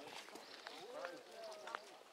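Faint talking of other people, with a few light clicks.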